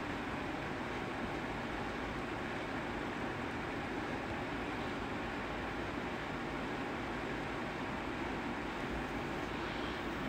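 Steady background room noise: an even hiss with a low hum, unchanging throughout.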